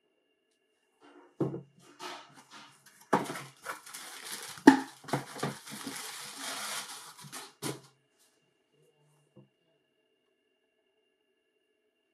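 Tissue paper rustling and crinkling as a sneaker is pulled out of a cardboard shoebox, mixed with several knocks of shoe and box against a wooden table, the loudest about halfway through. The handling stops after about eight seconds.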